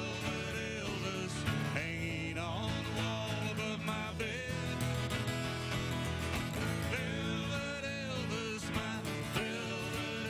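Two acoustic guitars strummed together in a live country song, with a melody line over the chords.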